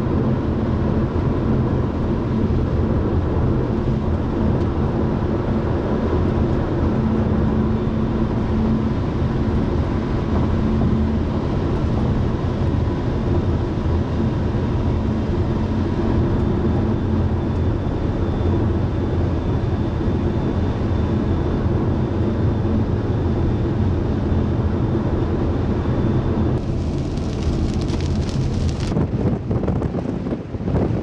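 Steady car road noise heard from inside the cabin while driving on a highway: engine and tyre noise with a low hum. Near the end a brighter hiss comes in.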